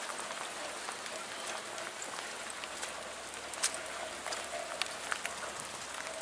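Steady rain shower, an even hiss of falling rain with scattered sharp drop ticks; one louder tick comes about three and a half seconds in.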